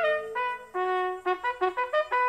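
A bugle call on a brass horn: a few longer notes, then a quick run of short repeated notes.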